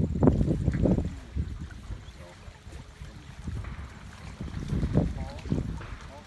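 Wind buffeting the microphone in gusts, strongest in the first second and again about five seconds in, with faint distant voices underneath.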